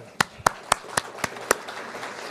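A man clapping his hands six times, about four sharp claps a second, close to the podium microphones, over a faint haze of applause from the audience.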